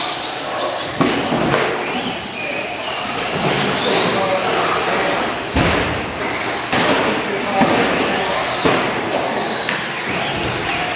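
Electric RC short-course trucks racing: high motor whines rising and falling as they speed up and slow down, with several sharp thuds spread through as they land jumps or hit the track boards.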